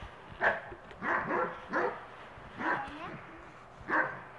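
A dog barking in about five short, separate barks spread over a few seconds, while two dogs play-wrestle.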